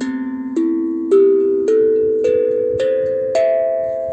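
Steel tongue drum (a 30 cm, nine-tongue glucophone) played with the fingertips, one tongue after another in a rising scale. There are about seven notes, a little under two a second, and each note keeps ringing under the next.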